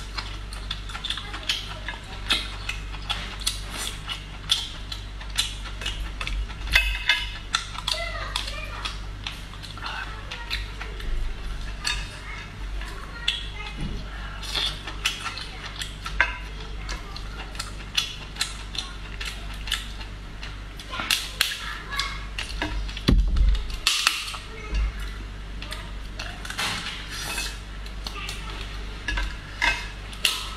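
Cooked lobster being eaten by hand: shell cracking and snapping as claws are pulled apart, a metal utensil clicking and scraping against a plate, and mouth sounds, coming as many short clicks and cracks.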